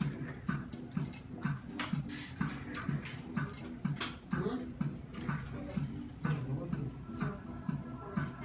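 Hair-cutting scissors snipping, in sharp clicks about three a second, over background music with a steady low beat.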